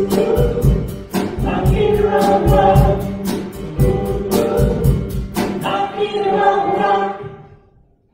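Live church worship band: voices singing with acoustic guitar, keyboard and a steady percussive beat, the last chord fading away about seven seconds in.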